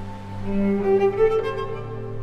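Solo cello playing with the orchestra's strings, over a low held note. About half a second in, the cello line climbs and swells louder through several notes, then eases back near the end.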